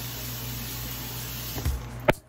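Steady hum and hiss of a small room, like a fan or appliance running, with a couple of soft knocks near the end.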